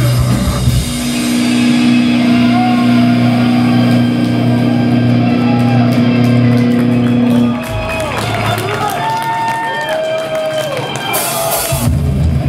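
Metalcore band playing live: a low guitar chord held and ringing for several seconds, then the sound thins out to quieter wavering higher tones before the full band comes back in at the very end.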